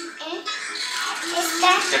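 A television playing a children's show: background music with voices from the programme, heard in a small room.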